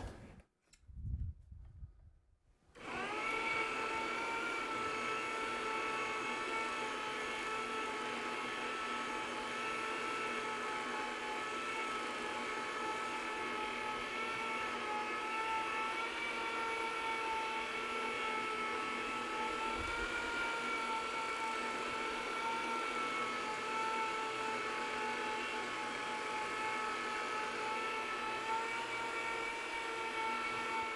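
The electric motor of a MiniMax bonnet carpet-cleaning machine starts about three seconds in. It then runs steadily, a whine with several pitches, as it spins a bonnet pad over the carpet.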